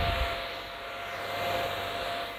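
Mini electric hand fan running, a steady whir with a faint motor whine, held close to the microphone. A brief low rumble comes at the start.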